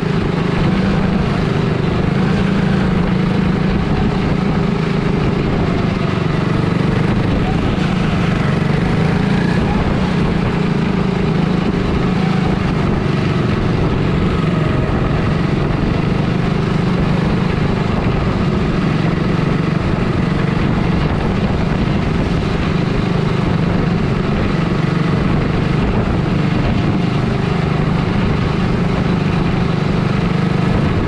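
Quarter midget race car's small engine running steadily at racing speed, heard from on board the car.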